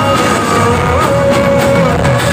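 Live rock band music played loud through the stage sound system, with electric guitar in the mix and a long held melody note that bends briefly about a second in.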